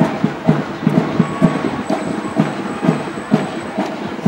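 Drums playing a steady marching beat, about two strong beats a second with lighter strokes in between.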